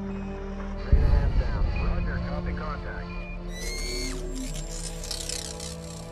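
Film soundtrack: sustained dramatic music, with a sudden heavy low boom about a second in, and high, falling electronic whistles with a hiss a few seconds later.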